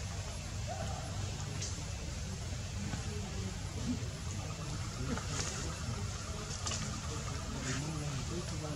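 Outdoor background noise: a steady low rumble with a few faint, short ticks scattered through it.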